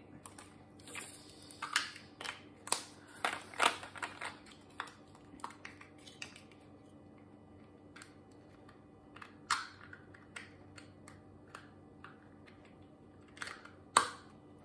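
Crinkling of plastic bags and light clicks of small plastic diamond-drill storage containers being handled, in a busy cluster over the first few seconds, then only occasional sharp clicks.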